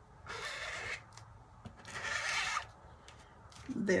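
Plastic squeegee scraping leftover torch paste across a fine-mesh screen-printing stencil: two scraping strokes, the second a little longer than the first.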